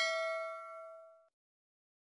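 A bell-like 'ding' sound effect, the notification-bell chime of a subscribe-button animation. It rings with several clear tones and fades out about a second and a quarter in.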